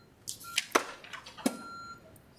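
Security alarm panel beeping its exit-delay warning after being armed in away mode: a steady high electronic beep that comes on and off, with two sharp clicks between the beeps.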